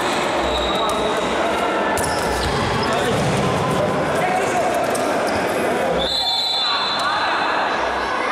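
Futsal ball being kicked and bouncing on an indoor court, with players shouting, all echoing in a large hall.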